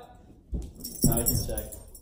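A person's voice, loud and short, over a bright metallic jingling that starts suddenly about half a second in.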